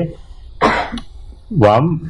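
A person coughs once, briefly, about half a second in, followed near the end by a man's voice speaking a short phrase.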